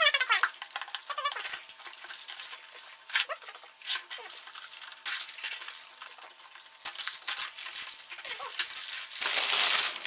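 Clear cellophane wrap being picked at and peeled off a cardboard tea box: intermittent crinkling and crackling, loudest about nine seconds in as the film comes away.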